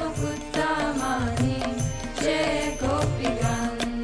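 Devotional kirtan: a voice singing a chant with bending, ornamented pitch over a held steady note, with regular drum beats and sharp rhythmic strokes keeping time.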